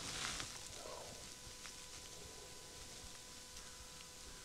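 Quiet outdoor ambience with a brief rustle at the very start, over a faint steady high-pitched hum.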